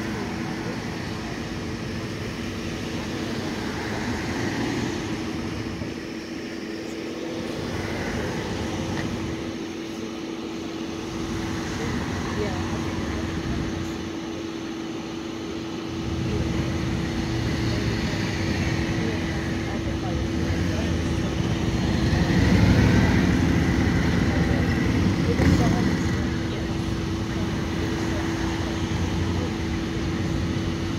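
Cars driving past on a street over a steady low hum. The road noise grows louder about halfway through and is loudest a few seconds later.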